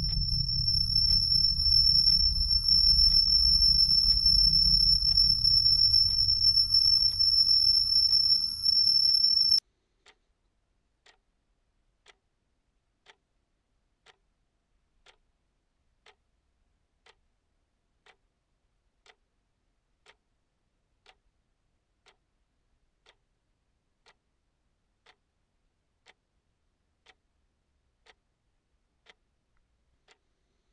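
A clock ticking once a second. For about the first ten seconds a loud low rumble with a steady high-pitched whine plays over it, then cuts off suddenly, leaving only the faint ticking.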